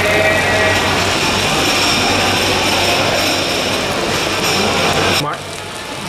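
Lamb sizzling on a dome-shaped Genghis Khan grill: a loud, steady hiss that cuts off abruptly about five seconds in.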